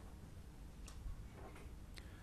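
Faint room tone with a low hum, broken by two or three faint ticks.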